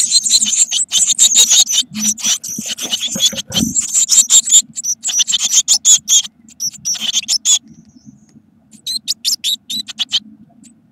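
Blue tit nestlings begging in the nest box as an adult feeds them: a rapid, high-pitched chorus of cheeps. The calls stop about three-quarters of the way through, then start again briefly near the end, with a dull bump under them a little before the middle.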